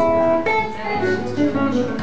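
Gibson ES-335 semi-hollow electric guitar played solo through an amplifier: a chord, then a melody of single picked notes following one another.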